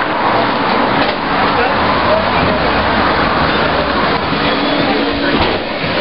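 Indistinct murmur of voices and general background noise of a restaurant, with rustling and movement noise as the camera is carried through the entrance.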